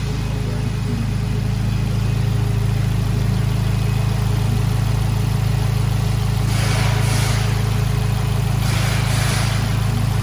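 Abarth 124 Spider's 1.4 MultiAir turbo four-cylinder engine idling steadily at an even pitch. Two brief rushes of hiss come in the second half.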